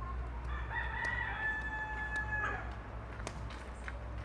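A rooster crowing once: a single call that rises at the start, holds steady for about a second and a half, then drops off at the end.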